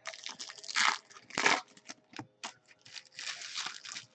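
Crinkling and rustling of packaging being handled: a string of irregular crackles and scrapes, with louder bursts about one and a half seconds in and a longer rustle near the end.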